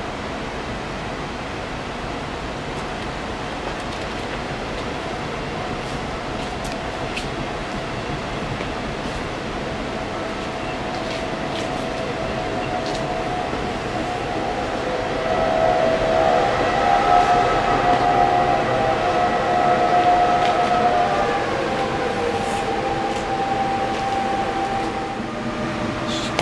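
Passenger train coaches rolling past on the track, a steady rumble with a sustained high squeal that grows louder after the middle. Near the end the squeal slides down in pitch and fades as the train moves away.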